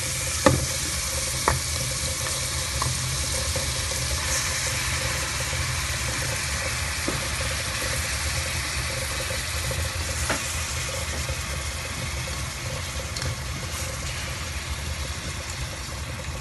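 Onion, garlic and beef sautéing in oil in a pot, a steady sizzle, with clicks and scrapes of tongs stirring them; a sharp knock about half a second in is the loudest sound.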